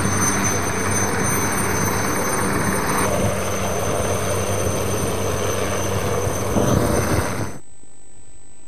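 Helicopter flying low over the sea, its rotor and engine running steadily; the sound cuts off suddenly near the end.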